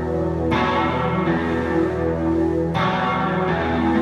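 Live rock band playing: amplified electric guitars hold sustained, overlapping chords over a steady low bass. New chords are struck about half a second in and again near three seconds in.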